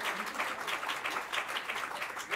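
Audience applauding: many hands clapping, dense and steady.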